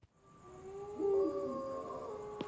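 Cartoon night-time sound effects: a faint, steady high chirring, joined from about half a second in by low, wavering hoot-like calls that swell and hold.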